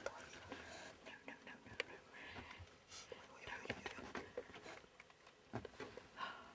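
Low whispering from people, with scattered small clicks and taps.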